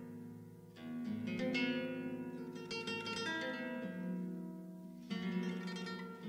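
Solo nylon-string classical guitar playing a contemporary piece. Plucked chords and notes ring and die away, with a new flurry of notes about a second in and another strong chord about five seconds in.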